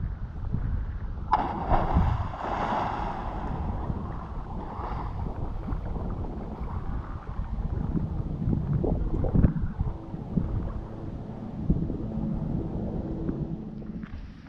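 A person jumping feet-first into lagoon water from a pontoon: a splash about a second in, then water sloshing. Wind buffets the microphone throughout.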